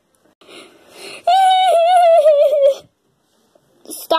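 A child's voice acting out a high, wavering crying wail that slides slowly down in pitch for about a second and a half, after a breathy sob.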